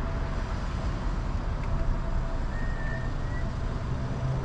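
A vehicle running and driving slowly, with a steady low engine and road rumble. A brief faint high tone comes about two and a half seconds in.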